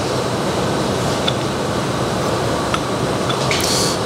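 Steady rushing background noise, like a ventilation fan, with a few faint clicks as a chromoly rod end is turned on the threaded 7075 aluminium body of a toe arm.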